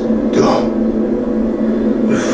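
A movie trailer's soundtrack playing in the room: a steady low drone with a falling whoosh about half a second in.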